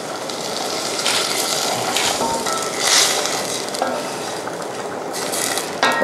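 Dark brown liquid poured into a hot stainless steel pot of diced vegetables, sizzling and bubbling, while a wooden spoon stirs and scrapes against the pot in several short bursts.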